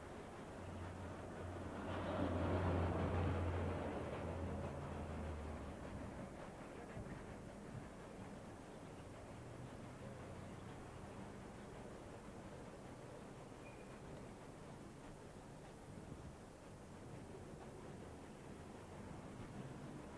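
A motor vehicle drives past: a low engine rumble swells about two seconds in and fades away by about six seconds, leaving steady street background noise.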